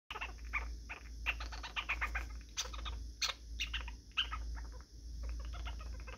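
Young squirrel squirming and rolling in a shaggy faux-fur bed: a quick, irregular series of short clicks and scratchy sounds, several a second, over a low steady hum.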